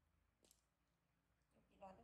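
Near silence with a single faint, sharp click about half a second in, then a faint voice starting near the end.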